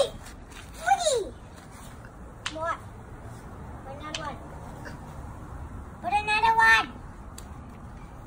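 A child's short wordless vocal calls with pitch sliding up and down, four in the first half, then a longer held call about six seconds in.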